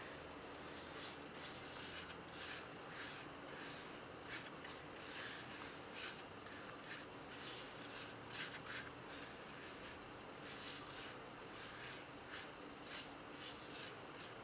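Paintbrush bristles scrubbing over a rough fibre-paste texture on watercolour paper: a quick, irregular run of soft scratchy strokes, several a second.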